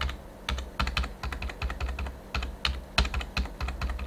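Computer keyboard keys pressed in an irregular run of sharp clicks, several a second, over a steady low hum.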